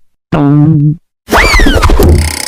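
Two cartoon sound effects. First comes a short, low, buzzy tone, and then a whistle that climbs briefly and slides down in pitch over a low thump.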